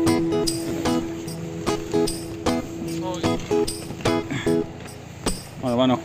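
Background music with held tones and a regular beat, with a brief voice just before the end.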